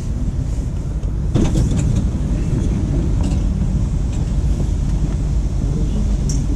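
Steady low rumble inside a Dubai Metro train car while it stands at a station with its doors open, with a brief clatter about a second and a half in.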